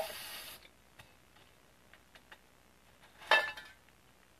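Aerosol spray paint can hissing in a short burst that cuts off about half a second in, followed by a few light clicks and another short hissy burst near the end.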